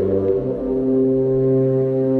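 Low, held brass notes, horn-like, in the cartoon's score. A deep note comes in about half a second in and holds under higher sustained notes.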